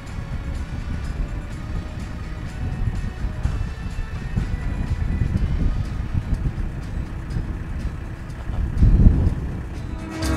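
Wind buffeting the microphone in an uneven low rumble, with a stronger gust about nine seconds in, under soft background music.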